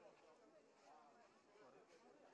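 Near silence with faint, indistinct voices of people talking in the background.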